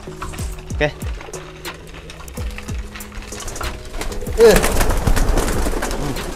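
Domestic pigeons cooing in a loft. About four and a half seconds in comes a sudden burst of wing flapping as the flock takes off around a person grabbing at a bird.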